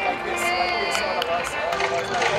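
Background chatter of people talking over one another, with a few short, sharp clicks.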